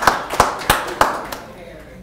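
Hands clapping, about three sharp claps a second, over fainter applause from the room. The clapping stops about a second and a half in.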